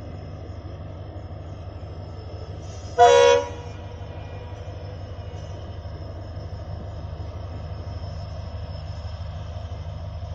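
WDP4D diesel-electric locomotive approaching with a steady low engine drone. About three seconds in it sounds one short horn blast lasting about half a second.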